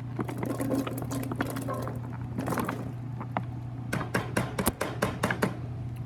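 Raw butternut squash cubes tipped from a plastic tub into a pot of vegetable broth, landing with a run of wet plops, splashes and clicks that come thickest near the end. A steady low hum runs underneath.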